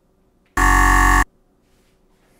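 Game-show style buzzer sound effect: one harsh, loud buzz of under a second, starting about half a second in and cutting off suddenly. It signals that the countdown has run out.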